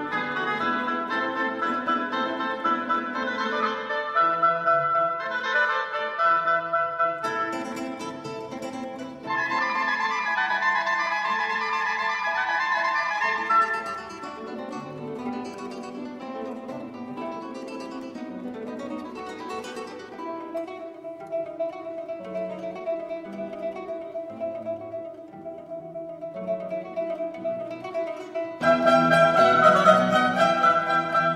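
Baroque music played by mandolins with a string orchestra. It turns softer about fourteen seconds in and swells fuller again near the end.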